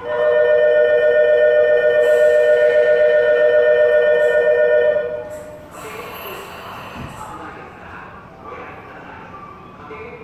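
Station departure signal on a train platform: a loud, steady electronic tone of two close notes that sounds for about five seconds and then cuts off. After it, a short hiss and a single thump about seven seconds in, with a voice at low level.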